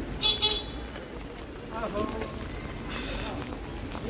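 A vehicle horn toots twice in quick succession, the loudest sound here, over steady street noise. Voices talk nearby, and a shorter, fainter high tone sounds about three seconds in.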